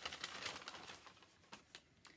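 Paper bag crinkling and rustling as a hand rummages in it and draws out a paper slip. The crinkling is mostly in the first second, then a few faint rustles.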